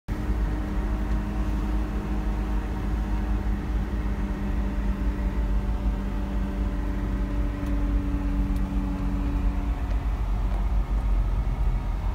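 A car's engine and road rumble heard from inside the cabin while driving: a loud, steady low rumble with a steady engine hum that fades out about ten seconds in.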